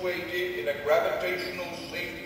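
A man's voice speaking, its words not made out, in a large hall.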